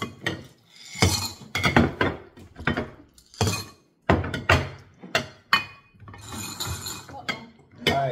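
Mike and Ike candies poured off paper plates into a glass bowl, clattering against the glass in a series of short rattling bursts.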